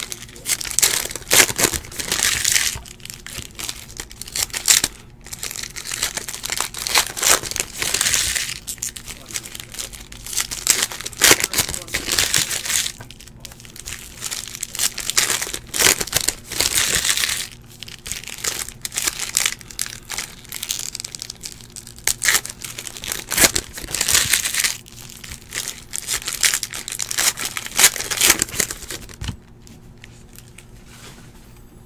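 Baseball card pack wrappers crinkling as they are torn open by hand, with cards riffled and flipped through. The crinkling comes in repeated bursts every few seconds.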